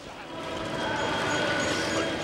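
Busy city street ambience: a crowd's hubbub mixed with traffic noise, swelling over the first second and a half, with a few faint steady tones in it.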